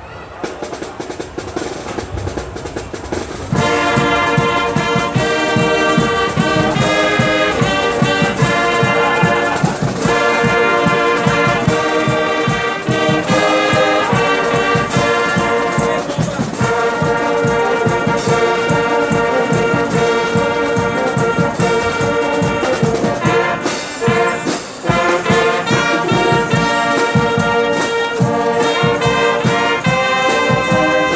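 A marching band's brass section (trumpets and other brass) playing sustained chords. It opens quieter for the first few seconds, then the full brass comes in loudly about three and a half seconds in, with a brief drop near the end.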